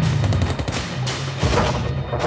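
Dramatic background music with low sustained notes and a run of sharp percussive hits.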